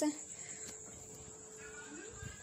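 A woman's voice trailing off at the very start, then a low steady hiss with a thin steady high whine: the background of a voice-over recording in a pause between phrases.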